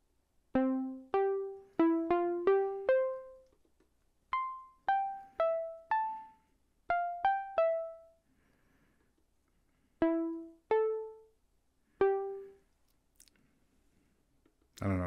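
Moog Mother-32 analog synthesizer sounding single short plucked notes of changing pitch, one key press at a time, as a new sequence is keyed in on its button keyboard. The notes come in uneven little runs, about sixteen in all, with a pause of about two seconds between the runs near the end.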